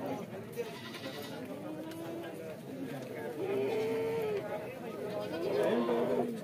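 Goats bleating over a background of men's chatter, with one longer, held bleat a little past the middle and another near the end.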